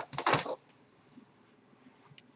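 A quick cluster of sharp clicks and knocks in the first half second, then faint room tone with a few light ticks.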